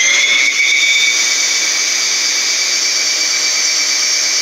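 Bauer handheld electric drain cleaner's motor and cable drum running in reverse, retracting the spring cable into the tool. It makes a steady high-pitched whine.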